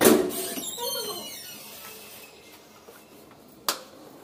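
A door being handled: a sudden loud bang at the start that rings on and fades over about two seconds, then a single sharp click near the end.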